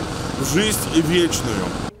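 A man speaking in short phrases over a steady low background rumble; the sound cuts off sharply just before the end.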